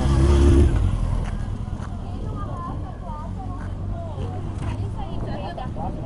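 Engine of a Honda CBR900RR sport motorcycle passing close, loudest in the first second and then fading away.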